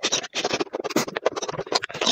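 Close-miked slurping of sauce-coated enoki mushroom strands into the mouth: a fast, dense run of smacking and sucking clicks.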